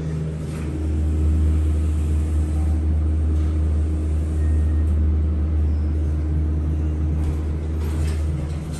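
Montgomery traction elevator car travelling between floors, heard from inside the cab: a steady low rumble, with a faint steady hum coming in about a second in.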